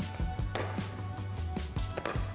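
Background music with a steady bass beat, with sharp pickleball paddle hits on the ball about half a second in and again at the end.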